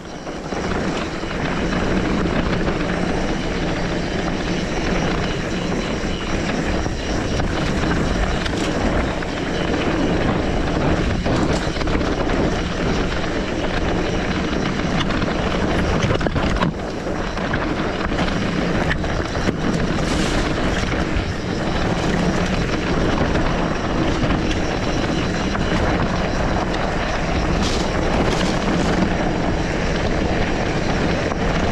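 Steady wind rushing over the action camera's microphone, mixed with the rolling rumble of an electric mountain bike's tyres on a dirt and stone trail. It gets louder about a second in and stays loud.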